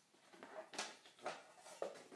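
Faint clicks and scrapes of a picture frame being taken apart by hand, its backing board and glass being lifted out, a short sound about every half second.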